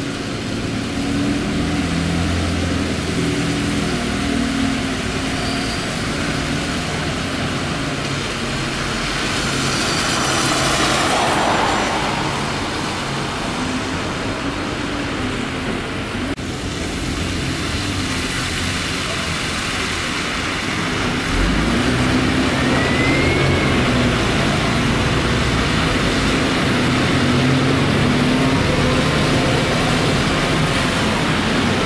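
Double-decker bus engines running as the buses move in and out of the stands, with tyre noise from the wet road. A vehicle passes close by, swelling and fading, about ten to twelve seconds in.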